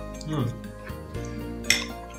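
A metal fork clinking against a dish, one sharp clink near the end, over steady background music.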